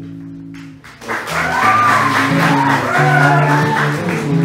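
Live Bollywood band: a hollow-body electric guitar chord rings and fades, then about a second in the music comes back in louder, with a bending sung and violin melody over guitar and tabla.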